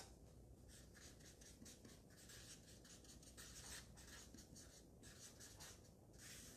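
Felt-tip marker writing on flipchart paper: a run of short, faint strokes in quick succession.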